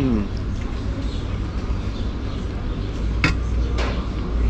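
A steady low rumble of background noise, with a short falling hum of a voice at the very start and two sharp clicks a little after three seconds in.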